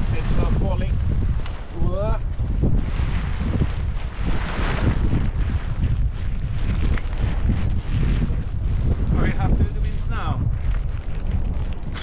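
Wind buffeting the camera microphone, a dense low rumble that swells and eases in gusts, with a few brief snatches of voice.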